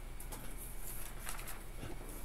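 Sheets of paper being handled: a few short rustles and light crackles scattered through the moment, over a steady low electrical hum.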